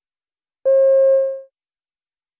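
A single electronic beep: one steady mid-pitched tone, under a second long, that fades away at the end. It is the cue tone that marks the start of a recorded extract in a listening exam.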